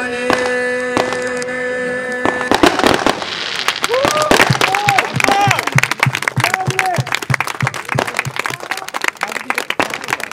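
A violin holds a final long note that stops about two and a half seconds in. Then the audience claps, with short rising-and-falling cheering shouts.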